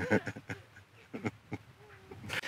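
A man chuckling in a few short, breathy bursts.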